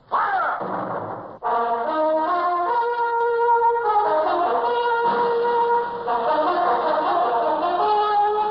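A sudden noisy blast lasting about a second and a half, cut off abruptly, then orchestral theme music with brass playing a melody of held notes.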